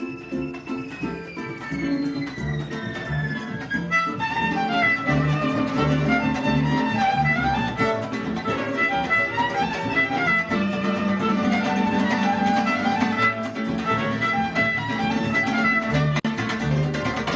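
Venezuelan folk music played live by a violin and a cuatro: the violin holds a long note that slides down in pitch, then from about four seconds in plays a quick melody over the cuatro's rhythmic strumming.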